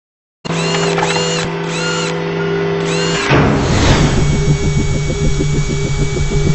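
Produced logo-intro sound effects. A steady mechanical whir with repeated arching high sweeps gives way about three seconds in to a whoosh, then a fast rhythmic machine-like pulsing mixed with music.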